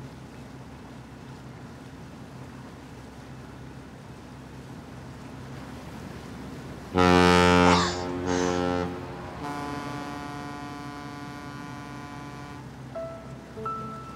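A ship's horn gives two short, loud blasts about seven seconds in, then a longer, softer one, over a low, steady drone of a boat's engine. Music with plucked or mallet-like notes comes in near the end.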